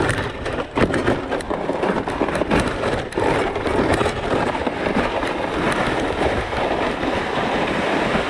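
Loaded ice-fishing gear sled dragged over crusty snow and slushy lake ice right under the microphone: a steady scraping rumble with constant small knocks and rattles from the runners and the gear riding on it.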